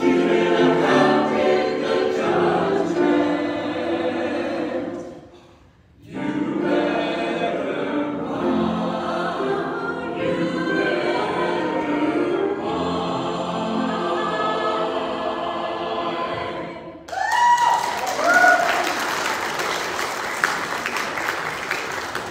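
Church choir singing with piano accompaniment, with a short breath pause about a quarter of the way in. The song ends about five seconds before the end and gives way to applause with a few cheers.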